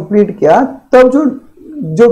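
Only speech: a man talking in a lecture, with short pauses between phrases.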